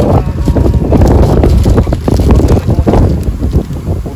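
Wind buffeting the microphone in loud, uneven gusts of low rumbling noise.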